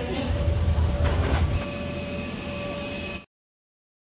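Low rumble of a jet airliner heard from inside the cabin, with faint steady tones over it, strongest in the first second and a half; it cuts off abruptly to silence about three seconds in.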